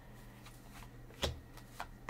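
Tarot cards being handled and laid down on a table: faint rustling, with a sharp card tap about a second and a quarter in and a lighter one near the end.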